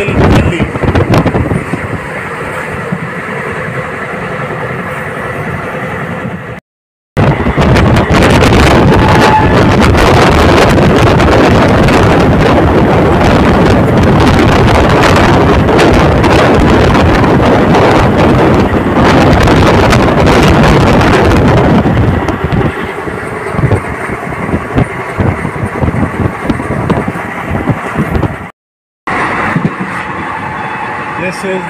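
Moving express train heard from an open window: steady rushing rail and running noise with wind on the microphone, at its loudest and fullest through the middle stretch. The sound cuts out briefly twice, about a quarter of the way in and near the end, where clips are joined.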